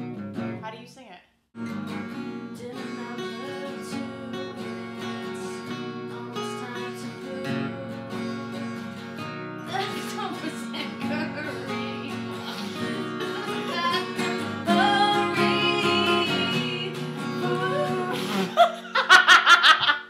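Two acoustic guitars strummed together, with women singing a harmony line that comes in about halfway through and grows louder. The singing breaks up into laughter just before the end.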